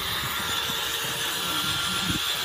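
A small motor running steadily with a faint thin whine, under a wash of wind and water noise.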